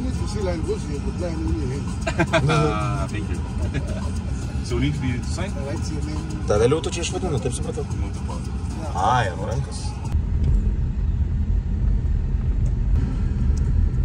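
Low, steady rumble of a Toyota SUV's engine and road noise heard inside the cabin, louder from about ten seconds in with the car on the move. Short stretches of talk in the first part.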